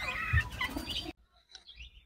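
Birds chirping faintly for about a second, then the sound cuts off abruptly to near silence.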